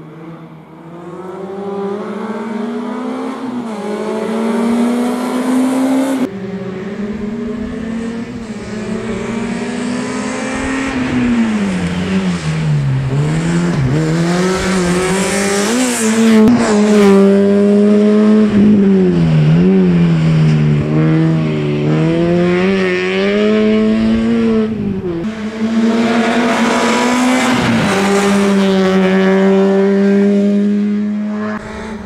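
Small hatchback race car's engine revving hard through a cone slalom, its pitch repeatedly climbing and dropping as the driver accelerates and lifts between gates. It grows louder over the first few seconds, and the sound jumps abruptly twice where the shot changes.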